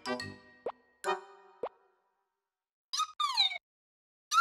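Cartoon soundtrack: a few pitched music notes that die away about two seconds in, with two quick rising 'plop' sound effects. After a short silence, two brief high squeaky chirps near the end.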